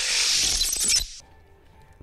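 Closing sting of a TV channel's logo intro: music ending in a bright, noisy crash-like sound effect that cuts off about a second in, leaving a brief quiet stretch.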